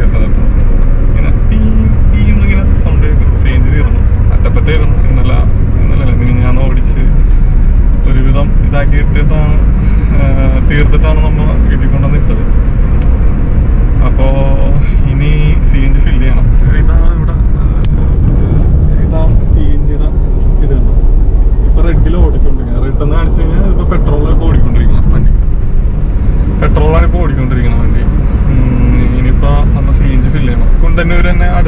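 A man talking over the loud, steady low rumble of a car driving, heard from inside the cabin.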